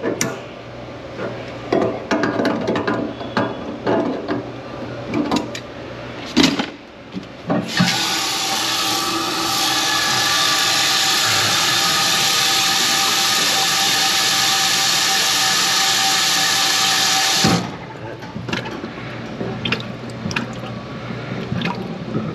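Scattered clicks and knocks for the first few seconds, then a faucet running water into a stainless steel sink basin: a steady rush for about ten seconds that cuts off abruptly, followed by a few small clicks.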